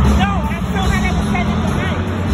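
Loud live arena concert sound from the audience: a steady deep bass from the sound system under several short vocal calls that rise and fall in pitch.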